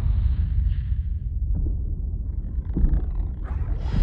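A loud, steady, deep rumble of trailer sound design, a creature-like underwater drone.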